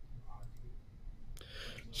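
A pause in a conversation: low room hum with a faint murmur, then a man starting to speak ("so") near the end.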